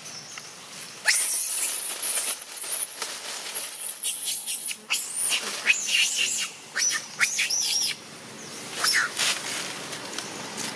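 Infant long-tailed macaque screaming: one long, very high-pitched, wavering squeal starting about a second in and lasting nearly four seconds, then a run of short, sharp high cries, with one more near the end.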